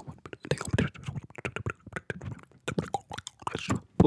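Mouth sounds made right up against a condenser microphone: a fast, irregular run of clicks, pops and short breathy voice bursts, like beatboxing.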